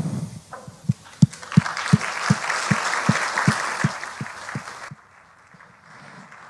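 Audience applause, with a regular low thump about three times a second running through it; the applause stops suddenly about five seconds in.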